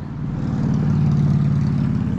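Outboard motor of a small aluminium boat running steadily at trolling speed, a low, even hum that swells slightly about a second in.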